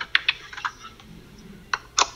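Scattered light clicks and crackles from a plastic water bottle being handled, heard over a phone video call: a cluster in the first half-second and a few more near the end.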